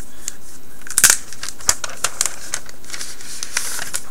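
Cardboard and paper packaging of a Nextbit Robin phone box rustling and scraping as its inserts are handled and pulled out, with a sharp knock about a second in and a denser rustle near the end.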